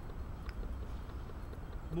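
Footsteps through dry fallen leaves on a forest floor and a person sitting down on a log, with a faint knock about half a second in, over a steady low rumble.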